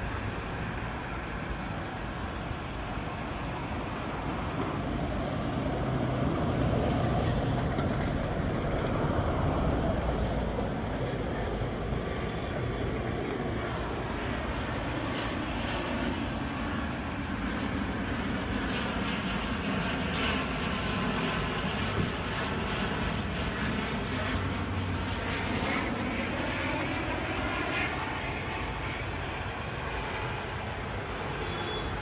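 Roadside traffic noise: a motor vehicle's engine and tyres swell as it passes a few seconds in, then a steady engine drone continues with a hum that rises and falls in pitch.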